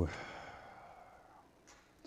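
A man's long exhaled sigh, close on a lapel microphone, fading away over about a second.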